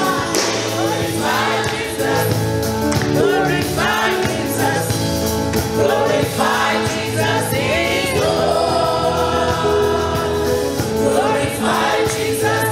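Live gospel praise-and-worship song: a group of women singing together into microphones, with a lead voice, over steady instrumental accompaniment with a regular beat.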